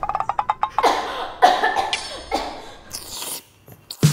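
A person coughing, four or five short, harsh coughs spaced about half a second apart, after a quick rapid ticking trill at the start.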